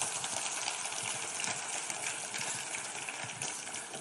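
Audience applauding: a steady wash of clapping that eases slightly toward the end.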